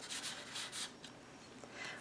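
Faint rustle of paper rubbing on paper as a journaling tag is slid into a pocket of a handmade paper mini album, a few soft strokes in the first second, then quieter.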